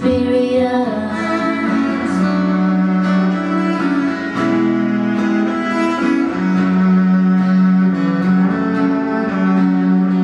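Cello playing long, held bowed notes over an acoustic guitar, an instrumental passage with no singing.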